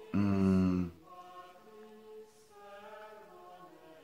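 A man's drawn-out hesitation sound, a held 'yyy' lasting about a second, then faint soft background music of held notes that change pitch a few times.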